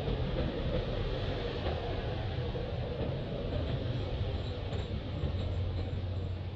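A steady low rumble with a broad hiss over it, unchanging in level.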